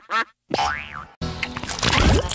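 Cartoon-style logo music and sound effects. Quick warbling pitched sounds stop briefly, then a boing-like sound rises and falls in pitch, and a dense musical passage comes back in the second half.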